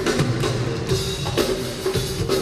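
Live drum kit and congas playing a steady rhythmic groove together, with bass drum and snare strokes under the hand-played conga tones.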